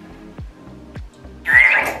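Background music with a steady beat. About one and a half seconds in, there is a brief loud squelch as hair gel is squeezed from a plastic tube into a palm.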